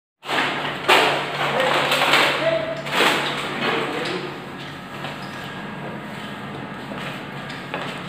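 Indistinct background voices and room noise, with two sharp knocks, about one and three seconds in.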